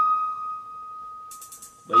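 A single high electric-piano note from the song's beat, held and slowly fading as the track ends.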